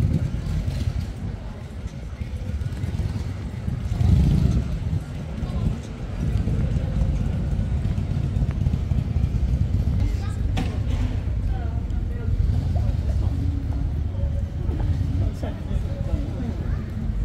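Busy city street ambience: a steady low rumble, with scattered voices of passers-by talking at a distance.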